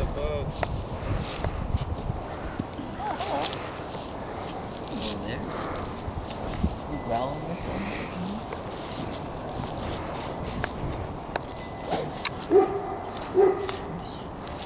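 Four-week-old Newfoundland puppies whimpering and whining in short, scattered cries, over light clicks and scuffles of the litter moving about. Two louder whines come near the end.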